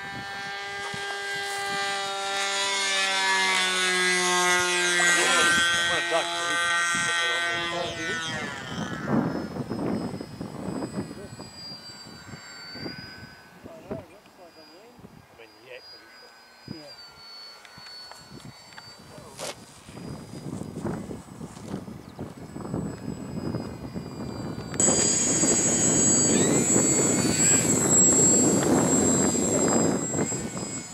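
A radio-controlled model airplane's motor drones in flight, growing louder as it passes and then dropping a little in pitch and fading after about eight seconds. After a quieter stretch, a high steady whine with a rushing sound cuts in abruptly near the end.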